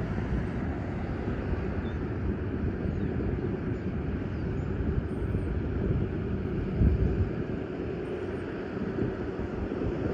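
Steady low outdoor rumble with no distinct events, briefly swelling louder about seven seconds in.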